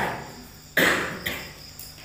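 Crickets chirping steadily in the background, with a short hiss a little after the middle.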